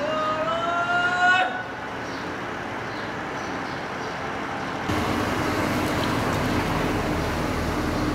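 Steady outdoor background noise with one pitched tone, rising slowly, lasting about a second and a half at the start, then a steady low hum from about five seconds in.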